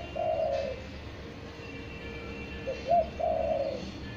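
Spotted dove cooing: a long coo just after the start ends one phrase, then two short coos lead into a longer drawn-out coo about three seconds in.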